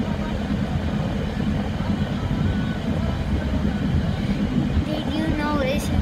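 Steady road and engine rumble inside a moving car's cabin. Near the end a child's voice starts singing over it.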